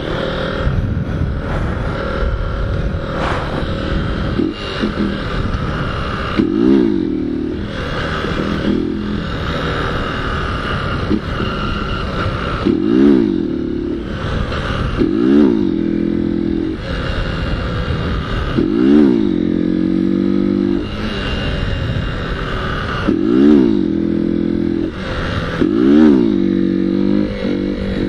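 Motorcycle engine held in a wheelie, the throttle opened about six times, each time revving up and falling back, over a steady running note with wind rushing on the microphone.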